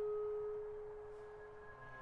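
Clarinet holding one soft note that slowly fades to an almost pure tone. A faint low note enters near the end.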